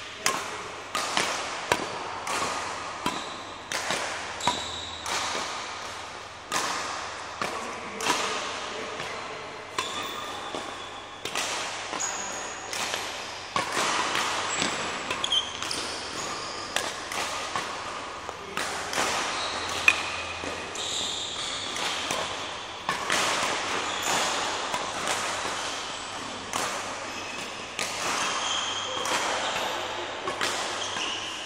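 Badminton court shoes stamping and squeaking on an indoor court floor during a footwork drill: irregular thuds, about one or two a second, some followed by short high squeaks.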